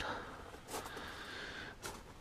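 A man breathing between sentences, with two short, faint breaths about a second apart.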